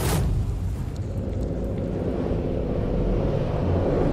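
Cinematic intro sound design: a brief whoosh at the start, then a steady deep rumble with faint held tones over it.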